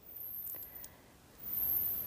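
Faint room noise with a couple of soft clicks, then a woman's quiet in-breath near the end.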